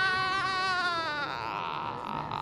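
A man's drawn-out, high-pitched "aaah" exclamation, falling slightly in pitch and ending about a second and a half in, leaving a steady background din.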